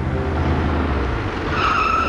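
Truck sound effect: a steady engine-and-road rush as the truck speeds in, then a tyre squeal with a high held screech setting in about one and a half seconds in.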